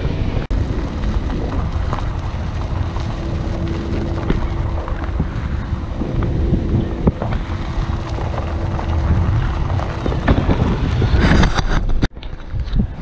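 Heavy wind buffeting the microphone from a moving car, with the car's low road rumble underneath.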